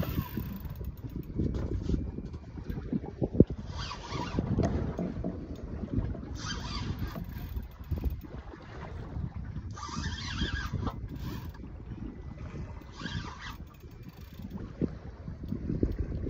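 Wind buffeting the microphone over water washing against a small boat's hull at sea, with a short hissing burst every few seconds.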